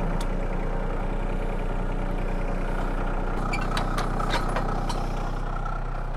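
A John Deere compact tractor's engine idling steadily, with a few light clicks about halfway through.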